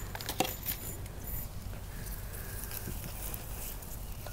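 Hands pressing and tucking potting soil around a plant's root ball in a concrete urn: soft rustling, with a few light crackles in the first second and a half.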